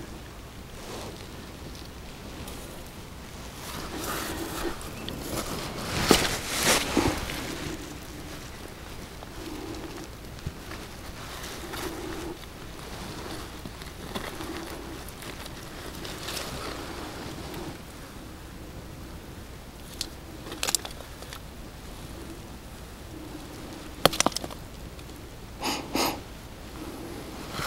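A gloved hand digging and scraping in damp soil and rustling the weeds on a dirt bank, with a few sharp clicks and knocks. A faint low sound repeats about once a second throughout.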